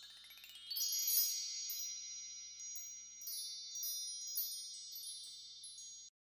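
High tinkling chimes. A quick upward run of bell-like notes in the first second gives way to sustained high ringing tones, with scattered tinkles above them, slowly fading and cutting off at the end.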